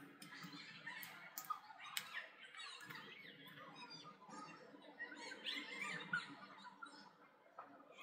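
Faint handling sounds of fingers rubbing and pressing on the bolt heads and metal rim plate of a solid hoverboard tire: a few light clicks, then small squeaks.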